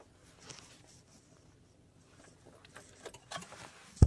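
Faint scattered clicks and rustles, with a cluster of sharper ticks in the second half.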